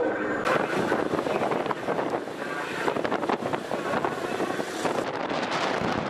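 Wind buffeting the microphone on a moving vehicle, over road and engine noise: a steady rush broken by rapid crackling gusts.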